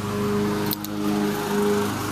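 An engine running steadily, a constant hum, with a couple of light clicks a little under a second in.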